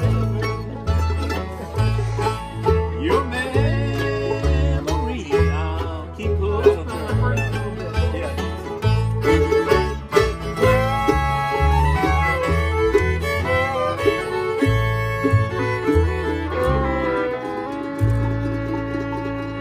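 Acoustic bluegrass jam, instrumental: two fiddles play the melody together over an upright bass keeping a steady beat, with guitar and banjo backing.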